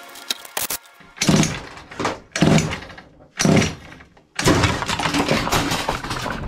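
Small two-stroke engine being pull-started with its carburettor freshly cleaned of a blockage: three short bursts as it fires on the pulls, then it catches a little over four seconds in and keeps running.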